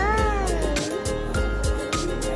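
Background music with a steady beat, over a young child's long vocal sound that rises and then falls in pitch, ending about a second in.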